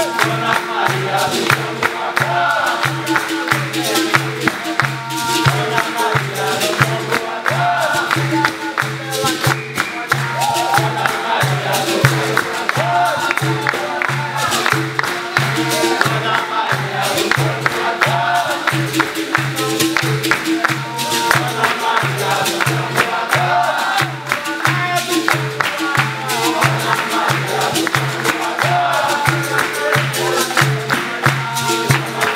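Capoeira roda music: berimbaus, atabaque drum and pandeiro playing a steady beat, with group call-and-response singing and the circle clapping along.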